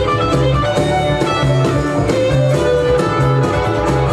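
Celtic folk-rock band playing live, an instrumental passage of strummed acoustic guitar over drum kit with a steady beat.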